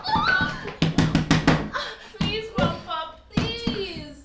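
A woman crying and wailing aloud without words, with a quick run of about six sharp knocks about a second in.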